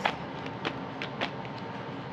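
Steady low background noise with two faint light clicks, about half a second apart, near the middle.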